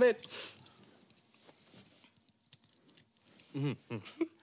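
A quiet room with faint rustling and small scattered clicks from people shifting about and handling things, after a word of speech. A short hummed voice sound comes near the end.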